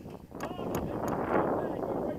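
Indistinct distant voices calling and talking across an open field, with wind on the microphone.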